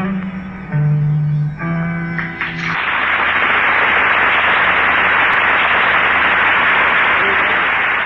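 Acoustic guitar playing the last held notes and chords of the song, then from about three seconds in, steady applause from the audience.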